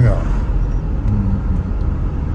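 Steady low road and engine rumble inside the cabin of a moving taxi.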